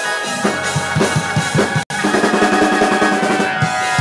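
Live praise music led by a drum kit playing fast rolls and hits under held chords. The sound drops out for an instant just before two seconds in.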